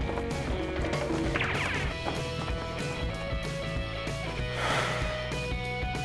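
Background music with steady held notes, and a short sweeping sound about a second and a half in.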